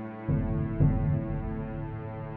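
Background music: a sustained, droning chord with a deep low pulse that comes in about a quarter of a second in and swells again near the one-second mark.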